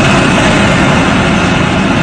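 Factory production-line machinery running, a loud, steady mechanical din.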